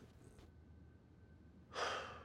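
Quiet room tone, then near the end one short, sharp audible breath from a man.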